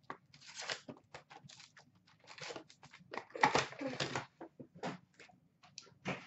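Paper and wrapped trading-card packs rustling and scraping as they are handled and lifted out of a cardboard hobby box, in a string of short crinkles with a longer, louder rustle about three and a half seconds in.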